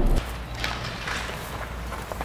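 A bus's low engine rumble cuts off suddenly a moment in, then footsteps on loose rubble and stones, irregular and fairly quiet.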